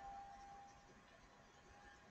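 Near silence: room tone, with a faint steady tone that fades out during the first second.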